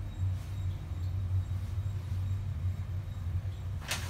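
Elevator car travelling between floors, a steady low rumble heard from inside the cabin. A sharp click sounds just before the end.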